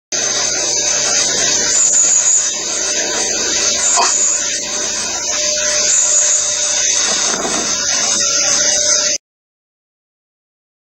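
Steady loud hiss with a faint constant tone running through it, cutting off suddenly about nine seconds in.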